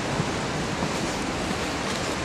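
Steady rushing noise of falling water, even and unbroken.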